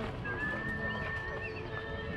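A single high, steady tone, held for nearly two seconds from about a quarter second in.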